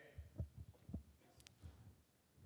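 Near silence broken by a few faint, short low thumps in the first second and a faint click later, picked up by a handheld microphone held close.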